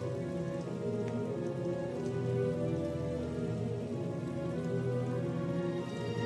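Film soundtrack music: a sustained score of held tones with a steady hiss beneath it, and no dialogue.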